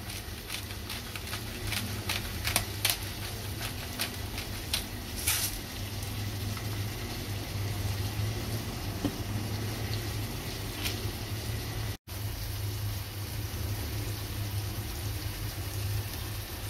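Garlic, onion and chili frying in oil in a small saucepan: a steady sizzle over a low hum, with sharp crackles and pops through the first several seconds. The sound drops out for an instant about twelve seconds in.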